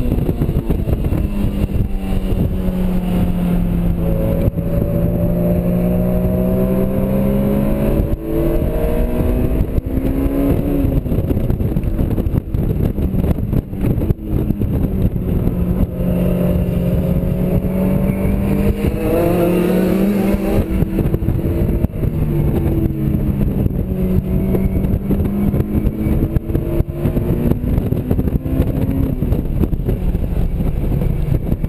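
Honda S2000's four-cylinder VTEC engine driven hard on track, heard from inside the cabin over heavy wind and road noise. Its pitch climbs several times and then drops back as the car accelerates and changes gear.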